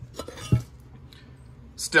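One sharp metallic clink about half a second in as a small aluminium engine side cover is knocked while being picked up off a work bench, with faint handling rustle around it.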